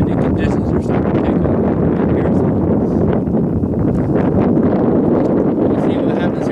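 Steady wind noise buffeting the microphone: a loud, low, unbroken noise with no distinct events.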